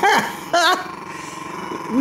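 A man's two short laughs near the start, then a quieter stretch in which a Chihuahua growls low while guarding its bone.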